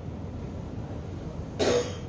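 A single short cough about one and a half seconds in, over a steady low room hum.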